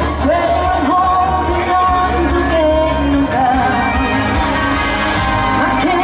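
Live pop music: a female vocalist singing long, held notes over a full band with a steady bass line.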